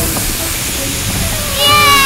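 Cartoon blowing sound effect: a steady rushing hiss of air blown hard from puffed cheeks. About a second and a half in, a voice-like sound with falling pitch comes in over it.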